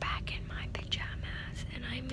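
A young woman whispering close to the microphone, with a few light clicks.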